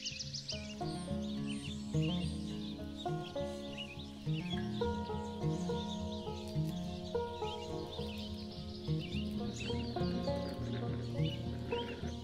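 Slow instrumental background music with held notes, mixed with small birds chirping in many short, quick calls.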